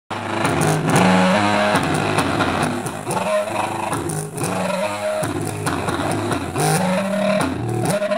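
Small paper-cone loudspeaker driven hard through a low-pass filter, playing bass notes that are each held for about a second before the pitch steps to another, with a rough, overdriven buzz.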